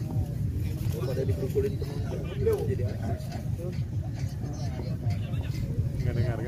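Indistinct chatter of several nearby voices, with no clear words, over a steady low rumble.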